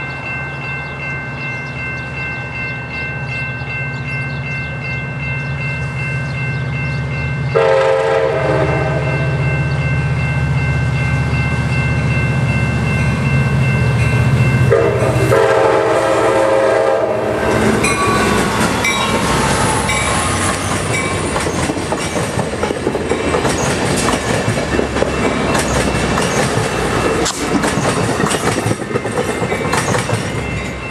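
Diesel passenger locomotive (EMD F59PHI) running with a steady engine hum. Its horn sounds two chords, a short one about 8 seconds in and a longer one about 15 seconds in. From about 18 seconds the train rolls past with loud wheel and rail clatter.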